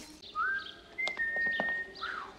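Whistling: a note slides up and is held briefly, then a second, higher note is held for most of a second. A few light clicks sound under the second note.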